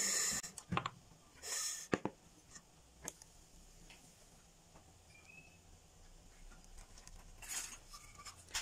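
Plastic blender jug and bowl being handled: a few light knocks and short clatters in the first three seconds and another shortly before the end, with the thin batter poured almost silently in between.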